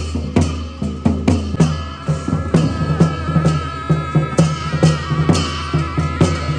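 Tibetan Buddhist monastic procession music: gyaling oboes play a wavering, reedy melody over regular drum and cymbal strikes, about two or three a second, with a steady low drone underneath.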